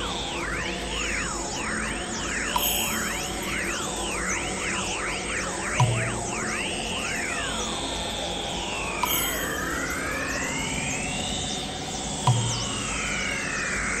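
Experimental electronic music: synthesizer tones sweep up and down in pitch, overlapping. The sweeps are quick at first and slow into long arcs about halfway through, with a low thud twice, roughly six seconds apart.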